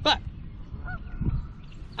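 Brief, faint honk-like bird calls about a second in, over a steady low rumble.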